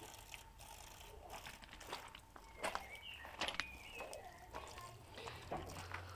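Thin stream of water from an outdoor garden tap trickling onto bare feet and gravel, faint, with a few light clicks and a brief high squeak a little past the middle.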